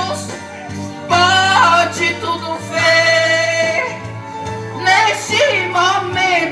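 A voice singing a Portuguese gospel hymn over steady instrumental backing, gliding between phrases and holding a long note in the middle.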